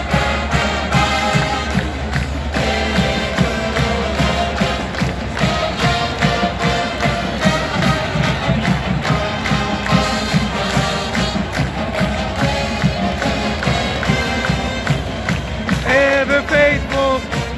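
Marching band playing with brass and a steady drum beat, heard from the stands over crowd noise.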